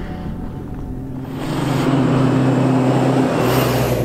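Jeep Wrangler driving up a dirt road toward the camera: a steady engine drone with tyre noise on the dirt, growing louder about a second in as it nears.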